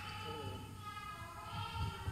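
Faint singing voice holding long notes that step from pitch to pitch.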